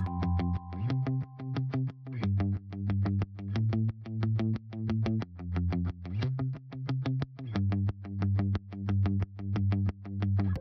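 Background music with a fast, even run of short repeated notes over a low bass line, swelling in a regular pulse.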